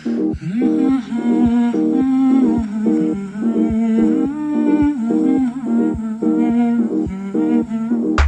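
Background music: a hummed melody that holds and glides over an accompaniment of short chords repeating at a steady pace.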